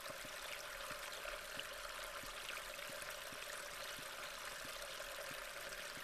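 Faint, steady rush of flowing water, an unchanging background bed.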